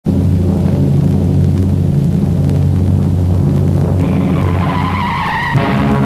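A car's engine rumbles steadily. About four seconds in, its tyres squeal with a falling pitch as it brakes, cut off short. Orchestral theme music with brass comes in near the end.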